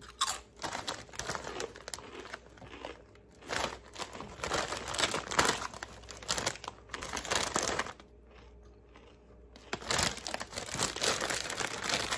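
Doritos tortilla chips being bitten and crunched close to the microphone, mixed with the crinkling of the foil chip bag being handled. The crackling runs in dense spells, drops away for a second or two a little past two-thirds through, then picks up again near the end.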